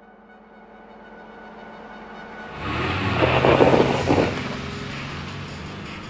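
Car engine sound effect in an animated outro, building up slowly and then breaking into a loud rev about two and a half seconds in, strongest around the fourth second. It then eases off under music.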